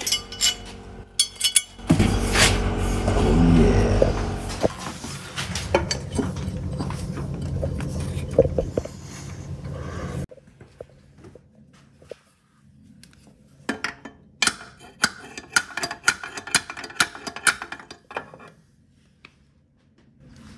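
Steel clinks and knocks as a custom steel gearbox mount bracket and its bolts are handled and fitted, with a run of sharp metallic clicks in the second half.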